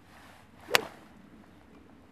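Golf club swung through with a brief swish, then a single sharp crack as the clubhead strikes a ball of ice off its tee, a little under a second in.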